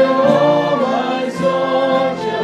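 A worship song: a man singing while strumming an acoustic guitar, with sustained sung notes over the chords.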